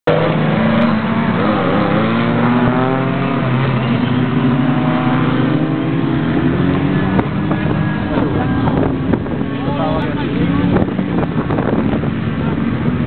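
Small hatchback's engine revving up and down repeatedly as the car is driven hard through a slalom, the pitch rising and falling with each gear and turn.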